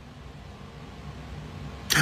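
Low, steady background rumble with no clear source, slowly growing a little louder. A man's voice starts again right at the end.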